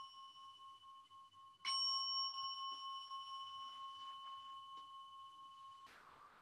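Meditation bell struck a second time about a second and a half in, while the ring of the first strike is still sounding. It leaves a long, clear, steady ring that slowly fades, marking the end of the meditation sitting.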